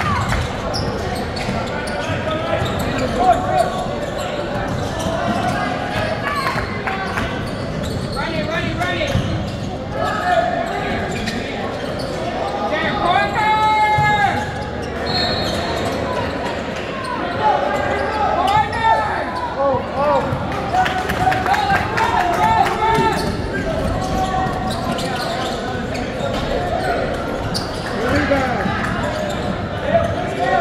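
A basketball bouncing on a gym floor during live play, mixed with players' shouts and voices, all ringing in a large echoing gym.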